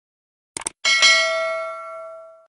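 A quick double click about half a second in, then a notification-bell sound effect that dings about a second in and rings on with several steady tones, slowly fading.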